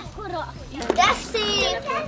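Young children talking and calling out, with a high-pitched child's voice clearest near the end.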